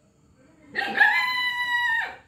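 A single high-pitched animal call, a little over a second long, starting a little under a second in. It rises briefly and then holds at a steady pitch.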